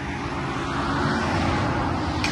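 Motor vehicle traffic: a steady engine hum with road noise, slowly growing louder.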